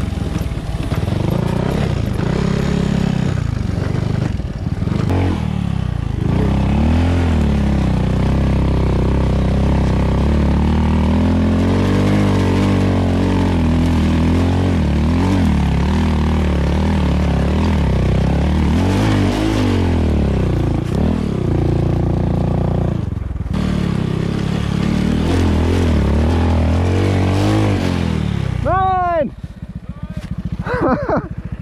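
Honda Grom's single-cylinder four-stroke engine through an Arrow X-Kone exhaust, revving up and down again and again under throttle while the bike is ridden off-road over dirt trails. The sound breaks off briefly about two-thirds of the way in.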